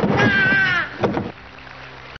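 A crow cawing: one long call, then a shorter one about a second in.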